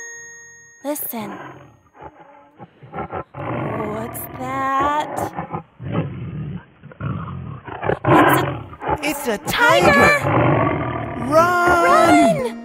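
A cartoon tiger roaring, several roars in a row after a short quiet start, with voices crying out near the end.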